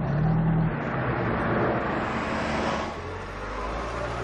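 Car engine and road noise heard from inside a moving car, steady and fairly loud, easing slightly about three seconds in.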